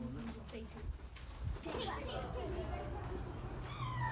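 Faint children's voices and background chatter, with a high-pitched child's voice near the end.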